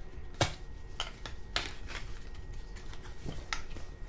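A small cardboard product box being opened by hand, with a few sharp clicks and light rustling of cardboard and paper as the flaps and folded insert are pulled out.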